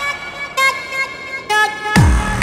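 Electronic music: sustained, brassy horn-like synth chords that dip briefly in pitch, with a sharp hit near the end.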